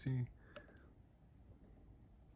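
A voice finishing a word, then quiet room tone with one faint click about half a second in.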